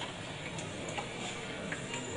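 Quiet lecture-hall room tone with a few faint, short clicks from laptop keys being pressed to advance a presentation slide.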